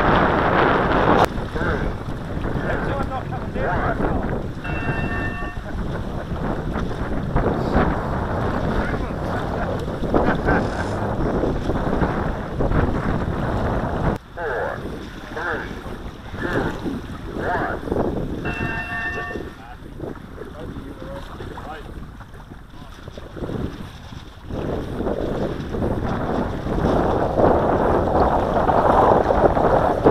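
Wind buffeting the microphone in uneven gusts. A short pitched tone with several overtones sounds twice, about 5 seconds in and again near 19 seconds.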